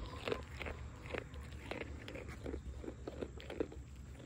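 A goat crunching and chewing treats taken from a person's hand: a run of small, irregular crunches.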